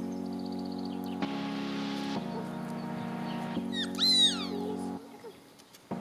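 Background music with sustained chords, and about four seconds in a short, high-pitched yelp from an eight-week-old Shetland sheepdog puppy. The music stops a second before the end.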